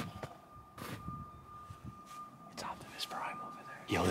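Quiet whispering with a few soft clicks or knocks, over a faint steady high tone.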